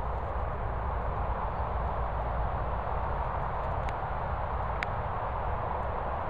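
Wind buffeting the microphone outdoors: a steady low rumble and hiss, with two faint sharp clicks about four and five seconds in.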